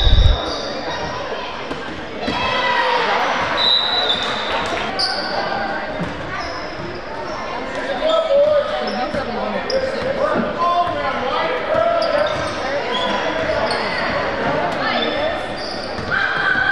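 Basketball being dribbled on a hardwood gym floor, the bounces echoing in a large hall, with short high squeaks from players' sneakers.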